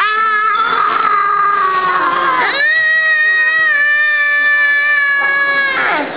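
A child's voice holding two long, high, steady notes. The first lasts about two and a half seconds. The second is higher, lasts about three seconds and cuts off just before the end.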